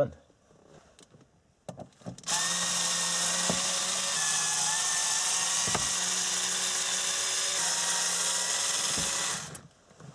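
Cordless drill-driver motor running steadily for about seven seconds, starting about two seconds in and stopping near the end, as it backs out the Phillips screws holding the shift boot; a couple of light knocks sound during the run.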